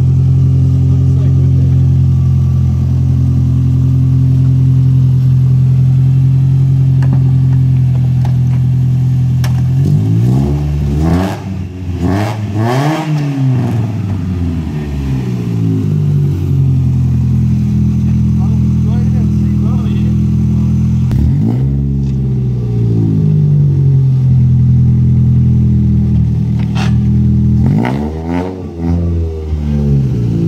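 Nissan Gazelle S12's engine idling steadily, then revved in free-revving blips while parked: the pitch climbs and falls about ten seconds in, again a little past twenty seconds, and once more near the end.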